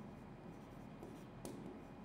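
Faint scratching and tapping of a pen writing on an interactive touchscreen board, with one sharper tick about one and a half seconds in.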